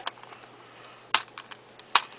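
Sharp plastic clicks from a Latch Cube's pieces being worked into place with fingers and fingernails: one loud click about a second in with a couple of smaller ones after it, and another near the end.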